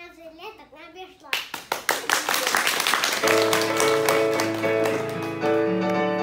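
A child's voice finishing a recitation, then audience applause of hand clapping from about a second in, with music of piano-like keyboard notes starting about three seconds in and playing on.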